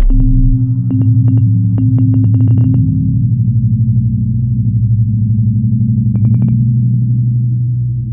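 Electrical buzz of a neon sign, a loud steady low hum with a fast flutter. Sharp crackling ticks come as the tubes flicker on: a quickening run of about a dozen between one and three seconds in, and four more quick ones near six seconds.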